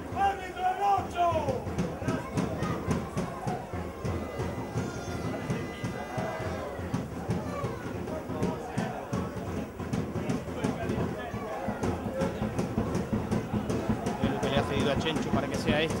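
Football ground ambience: players' and spectators' voices calling and shouting on and around the pitch, over a steady background murmur.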